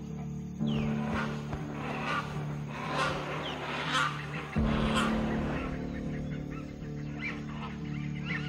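Hornbills calling repeatedly, about one call a second, over background music with steady low sustained tones.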